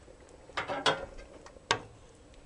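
Light clinks of a kitchen utensil against the pot and bowl while chowder is dished up: a small cluster just past half a second in and one sharp click near the end.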